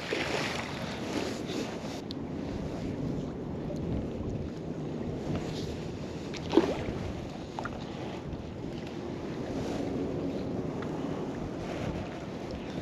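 Wind buffeting the microphone over river water lapping, as a magnet-fishing rope is hauled back in by hand after the throw. A single short knock about six and a half seconds in.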